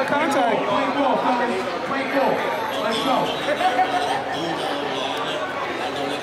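Crowd chatter: many spectators talking at once, overlapping voices with no single speaker standing out.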